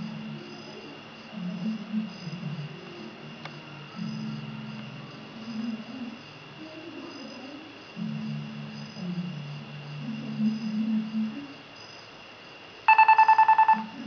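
HTC HD2 smartphone sounding its ringer near the end: a rapid warbling electronic tone lasting about a second, much louder than anything before it. Before it there are only faint low background sounds.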